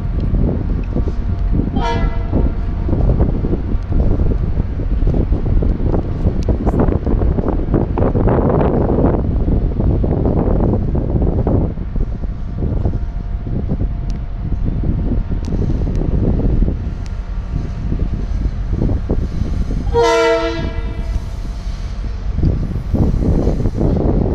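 A Metro-North M8 electric multiple-unit train rolls in over switches, its wheels rumbling and clicking. There is a short horn toot about two seconds in and a longer horn blast near the end.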